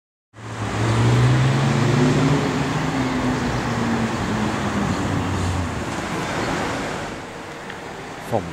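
Road traffic: car engine and tyre noise close by, starting abruptly, loudest in the first couple of seconds and slowly fading toward the end.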